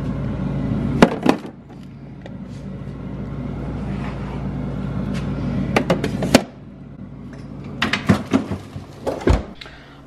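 Freezer drawer and metal cookie tins being handled: sharp clicks and knocks as the tins are set in, over a steady hum that stops about six seconds in, then more clatter and a low thump near the end as the drawer is pushed shut.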